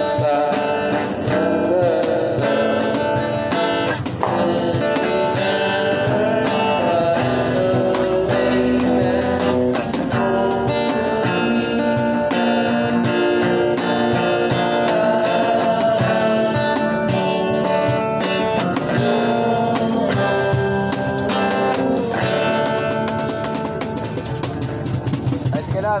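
Live acoustic music: an acoustic guitar strumming chords with a cajón beat under a male voice singing.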